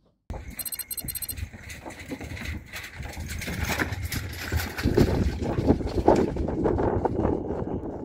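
Hand trolley's wheels rolling and clattering over the plank decking of a wooden pontoon, with a continuous low rumble under many small knocks, loudest in the second half.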